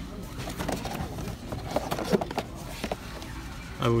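Store background with faint distant voices, and a few light clicks and knocks as boxed action figures are handled on the shelf.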